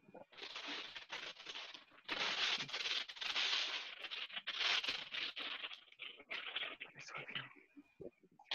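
Bursts of rustling, crackling noise coming over the call from a participant's unmuted microphone, in uneven gusts with small clicks through it.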